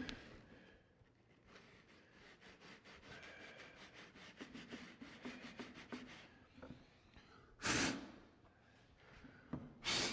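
Fingertip rubbing dirt onto the pleated fabric of a cellular blind: a faint run of short rubbing strokes, about four a second, that stops about six seconds in. Then two short puffs of breath, one a couple of seconds later and one near the end.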